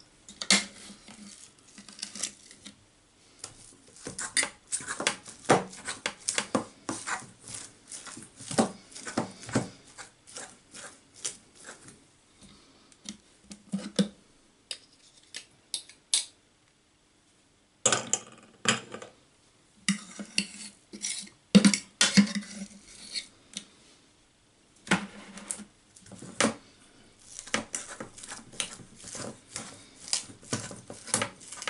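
A metal fork clinking and scraping against a plastic food-processor bowl and a stainless steel mixing bowl as minced sausage meat is scraped out and stirred, in irregular clatters with a couple of short pauses.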